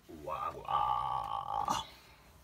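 A person's voice drawing out one long, steady vowel sound for about a second and a half.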